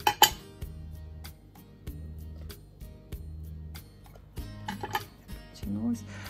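Sharp scissors snipping off excess suede strip: one sharp snip just after the start, then a quick run of clicks about four and a half to five seconds in, over soft background music.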